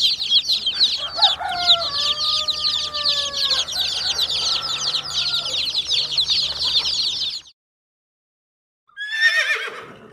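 A crowd of baby chicks peeping without a break, many rapid high cheeps overlapping, with a few longer, lower calls under them early on; the peeping cuts off suddenly about seven seconds in. After a short silence, a pony's whinny starts near the end, falling steeply in pitch.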